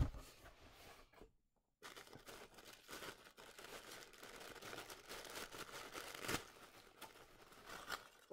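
Tissue paper rustling and crinkling as hands work at it and pull it loose from its sticker seal, a soft continuous crackle from about two seconds in. A single sharp knock comes at the very start.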